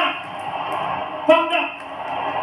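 Cricket television broadcast heard through the TV's speaker: steady stadium crowd noise, with a brief spoken word or shout just past the middle.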